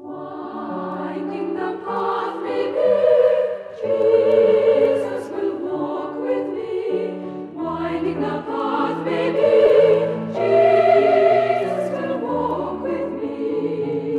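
A Salvation Army songster brigade (mixed choir) singing a song in parts, with accompaniment under the voices.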